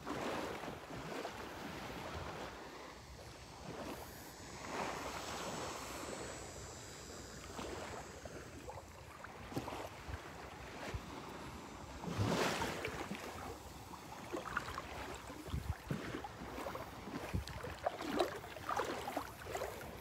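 Calm shallow seawater sloshing and lapping at close range, with wind on the microphone; louder swishes about five seconds in and again around twelve seconds.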